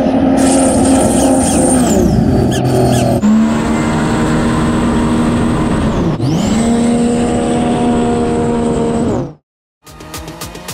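Jet ski engines running hard at high revs in several short takes cut together, with a high whine riding above the engine note. The revs fall about two seconds in, the sound changes abruptly a second later, dips and climbs back just after six seconds, and stops suddenly a little after nine seconds.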